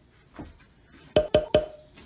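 Three quick wood-block-like percussive hits about a second in, each with a short ringing tone, forming a comic sound effect laid over the edit. A fainter knock comes shortly before them.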